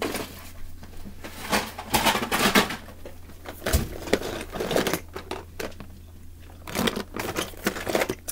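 Toy cars rattling and clattering inside a clear plastic storage bin as it is tipped and rummaged through, in irregular bursts of clicks, with a dull knock a little before the middle.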